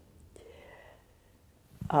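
A pause in a woman's speech: a quiet room with a faint breathy sound about a third of a second in, then her voice starts up again just before the end.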